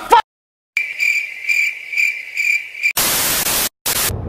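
Cricket-chirping sound effect: a steady high chirp pulsing about twice a second, starting abruptly out of silence. About three seconds in it gives way to a loud burst of static hiss lasting under a second, and a second short burst of static comes at the very end.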